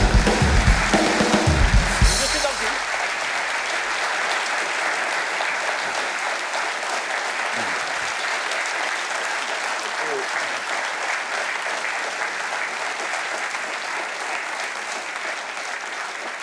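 Studio audience applauding steadily, slowly dying down towards the end. In the first two seconds a short burst of drums and bass from the live house band plays over the clapping.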